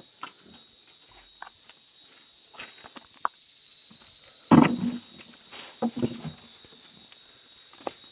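Domestic pig grunting: one louder grunt about halfway through, followed a second later by a few shorter ones.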